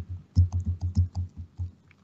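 Typing on a computer keyboard: a quick run of about ten keystrokes over a second and a half, each with a dull thump.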